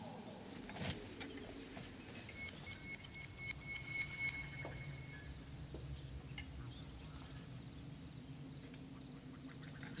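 A teaspoon clinking against a china teacup: a quick run of light clinks with a ringing note, from about two and a half to four and a half seconds in, over faint low background.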